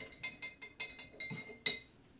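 Light clinks and taps of a paintbrush against a glass water jar, with a faint ringing from the glass and one sharper click near the end.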